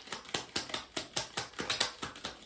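A tarot deck being shuffled by hand: a quick, even run of card clicks, about six a second.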